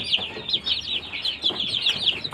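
A brood of young chicks peeping continuously: many short, high-pitched chirps overlapping, several a second.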